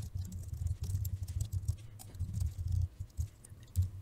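Typing on a computer keyboard: a fast, uneven run of keystrokes with a dull, thudding sound.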